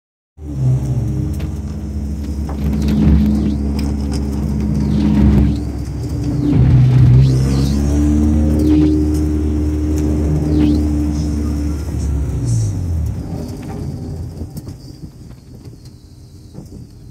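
Hornet-class race car's engine heard from inside the cabin, running at low speed with the revs rising and falling a few times. About 13 seconds in, the engine note drops away and it goes much quieter as the car comes to a stop.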